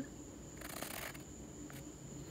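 Faint pencil scratching on a wooden blank: one short stroke about half a second in, with small ticks of the pencil lifting and touching down.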